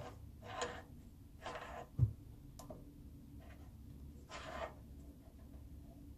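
Quiet handling of a steel quick-change toolpost and Allen key on a mini lathe: a few short soft scrapes, one sharp metal knock about two seconds in, and a small click just after.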